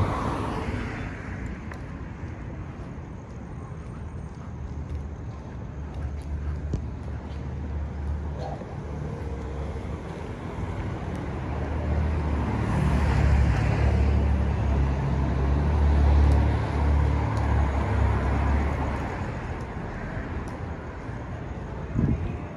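City street traffic: a steady hum of cars, swelling as a vehicle goes by about halfway through and easing off again near the end.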